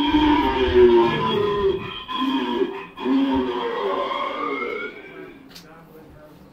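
A drawn-out moaning voice, a horror-attraction sound effect, in three long wavering stretches that die away about five seconds in.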